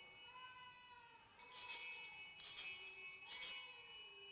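Altar bells (sanctus bells) rung three times about a second apart, each a bright jingling ring that dies away, marking the elevation of the consecrated host.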